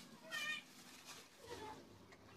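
A cat meowing: a short high-pitched meow about half a second in, and a fainter, lower one about a second and a half in.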